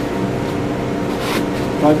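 A steady mechanical hum, with a brief rustle about a second and a half in.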